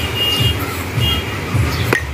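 A single light clink of fired clay cups knocking together near the end, over a steady low rumbling background with short high beeps at the start and about a second in.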